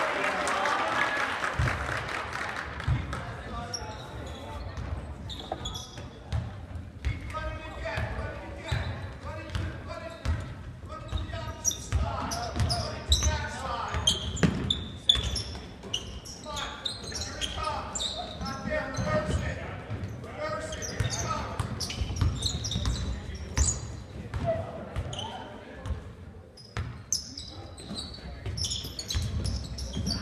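Live basketball game in a gym: the ball bouncing on the hardwood court with short sneaker squeaks. Players' and spectators' voices run underneath, echoing in the large hall.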